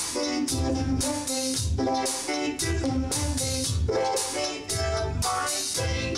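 Instrumental passage of an R&B/neo-soul song: Korg synthesizer keyboards playing sustained chords and short melodic figures over a steady drum beat.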